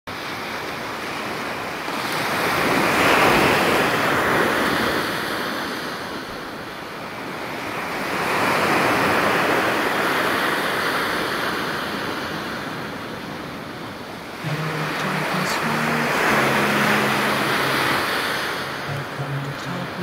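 Sea waves washing onto the shore, swelling and falling in three slow surges. About fourteen seconds in, low held music notes come in under the surf.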